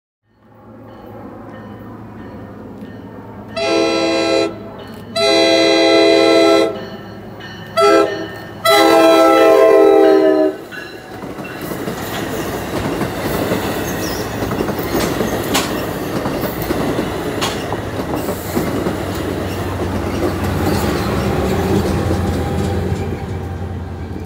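NJ Transit passenger train's horn sounding the grade-crossing signal: two long blasts, a short one and a final long one. The train then rolls by, its wheels clattering over the rails above a low steady hum.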